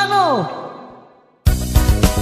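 The last note of a song, a held sung note, slides sharply down and fades out to near silence. About a second and a half in, the next song starts abruptly with a strong dance beat.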